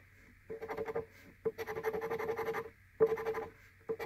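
A large coin scraping the latex coating off an instant lottery scratch ticket, in several short bouts of rapid scratching with brief pauses between.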